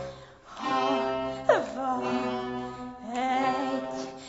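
Small theatre orchestra playing an instrumental passage between the sung lines of an operetta duet, with a quick downward glide about one and a half seconds in.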